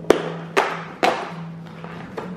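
Fingers pushing in and tearing open a perforated cardboard advent-calendar door: three sharp snaps about half a second apart, over soft background music.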